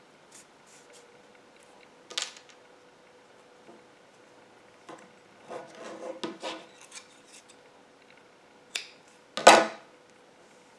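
Hands rubbing and handling a cotton-yarn crochet piece, with a sharp click about two seconds in and a cluster of rustles midway. Near the end come two sharp clicks, the second the loudest, from scissors trimming off the woven-in yarn tail.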